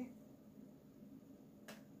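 Near silence: room tone, broken by a single short click near the end.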